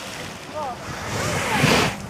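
Water splashing and churning around a skier who has just plunged into the lake, with wind on the microphone and faint voices in the distance. A louder rush of noise builds near the end and cuts off abruptly.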